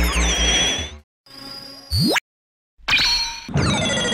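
Electronic intro music ends in a noisy swell with falling tones. Short synthesized sound effects follow: a quick rising sweep about two seconds in, then ringing whooshes with falling tones near the end.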